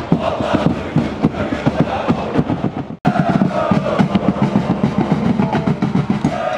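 Football supporters chanting in the stands over rapid, steady drumbeats. The sound cuts out for an instant about halfway through, then the drumming and chanting carry on.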